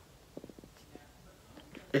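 Quiet room with a few faint soft clicks and rustles about half a second in, from a cardboard smartphone box being handled. A man's voice starts speaking right at the end.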